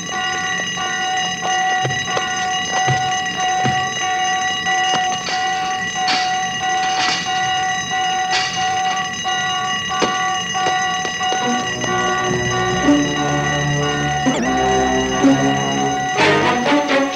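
An alarm bell ringing continuously, with film score music under it; low stepping notes of the score come in about twelve seconds in.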